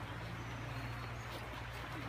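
Outdoor ambience: a steady low hum under faint background noise, with a few faint high chirps and soft footfalls on grass.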